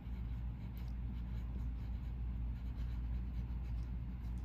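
Quiet room tone: a low steady hum with faint, light scratching sounds over it.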